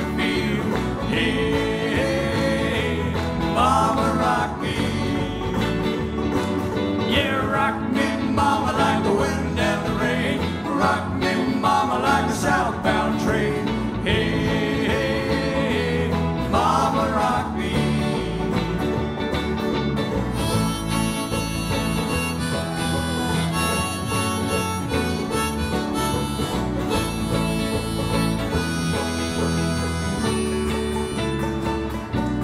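Live country band playing an instrumental break with no singing: a lead instrument plays bending melody lines over acoustic guitar, banjo and electric bass. The upper end gets brighter in the last third.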